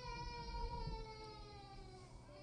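A single long, high-pitched cry, held for about two seconds and sliding slowly down in pitch as it fades.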